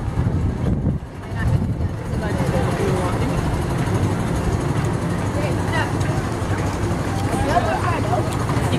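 Outdoor background of people talking, with voices clearer near the end, over a steady low rumble.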